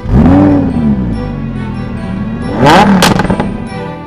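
Lamborghini supercar engine starting at the press of the start button: it fires with a loud rev flare that rises and falls, then settles to a steady idle. A second sharp throttle blip rises and falls about three seconds in.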